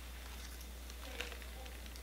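Quiet room tone with a steady low electrical hum, and one faint click about a second in, the sort made by handling a small plastic ornament.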